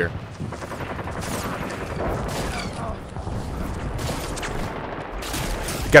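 Steady rapid gunfire as a battle background: a dense crackle of volleys with no single shot standing out.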